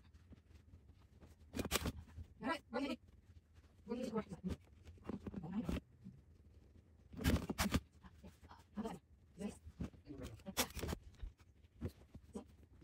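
Manual Stanley staple gun firing staples through upholstery fabric into a chair seat board: sharp snaps, a couple about two seconds in, more around seven seconds and again near the end. Low voice sounds come in between.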